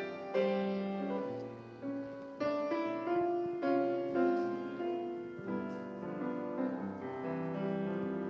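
Piano playing the introduction of a congregational hymn: struck chords under a slow melody, with notes held over.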